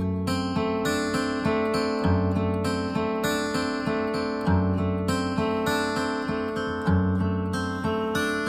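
Acoustic guitar tuned down a whole step, playing a picked chord pattern with a deep bass note about every two and a half seconds. It moves between a G major chord and an unusual chord with its bass on the fourth fret of the low E string.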